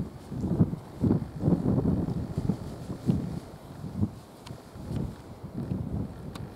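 Wind buffeting the microphone in irregular gusts, a low rumbling that swells and drops every fraction of a second.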